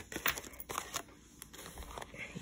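A paper card and plastic wrapping being handled: a run of soft rustles and small clicks, busiest in the first second and thinning out after.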